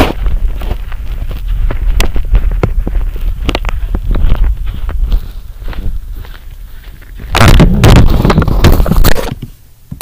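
Microphone handling noise as the recording device is carried about: a run of irregular knocks and rubbing over a low rumble. A louder stretch of rubbing comes about three quarters of the way through.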